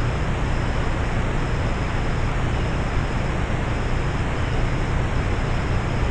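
Steady hiss with a low rumble underneath, the self-noise of a trail camera's built-in microphone, with a faint high tone breaking on and off.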